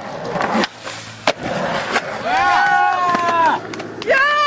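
Skateboard wheels rolling, with two sharp board clacks in the first second and a half. A person's long held shout follows.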